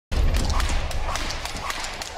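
Weight-room ambience: a quick run of sharp clicks and clanks from metal free weights over a low rumble, with voices murmuring in the background.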